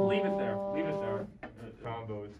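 A trombone holding one steady note that cuts off about a second in, with people talking over it and after it.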